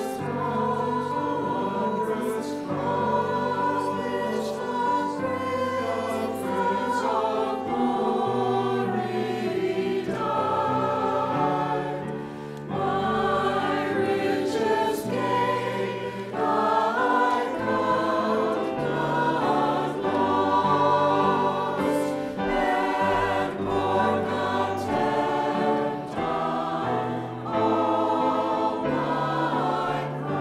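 Mixed choir of men and women singing in parts, with pitches shifting continuously.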